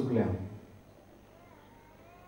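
A man speaking Konkani into a microphone, his phrase ending about half a second in, followed by a pause of faint room tone.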